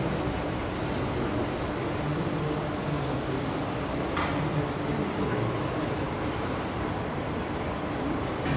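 A steady low mechanical hum with a faint drone, and a single brief click about four seconds in.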